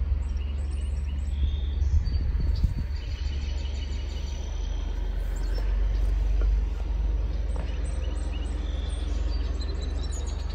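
Outdoor ambience: scattered bird chirps over a steady low rumble, with a few louder bumps in the rumble about two to three seconds in.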